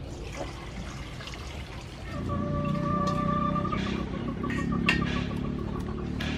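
Water poured from a plastic bowl into a stainless-steel bowl. About two seconds in the sound grows louder, with a held high tone that then breaks into short pulses, and a sharp click near the end.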